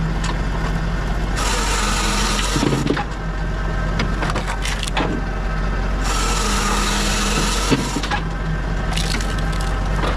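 Pilkemaster firewood processor working through a log. Its saw cuts twice for about a second and a half each, and the splitter cracks the wood with sharp snaps, with pieces clattering out, over the steady drone of the drive.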